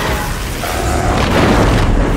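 Film battle soundtrack: deep explosion booms and rumble that build about half a second in, with a film score underneath.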